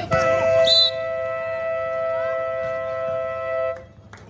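Scoreboard buzzer sounding the end of the quarter as the game clock runs out: one steady, multi-toned blast of about three and a half seconds that cuts off suddenly. A short, high whistle blast sounds under it near the start.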